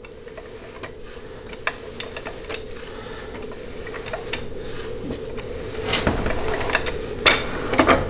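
Ford C6 automatic transmission's output shaft being turned by hand on the bench as a final check after band adjustment; its gear train and internals give irregular light metallic clicks and ticks that grow louder toward the end. A steady hum runs underneath.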